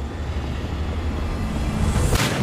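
A steady, deep rumble with a faint hiss above it, from a film soundtrack's sound effects.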